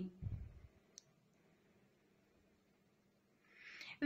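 Near silence, broken by a soft low thump at the start and a single sharp click about a second in.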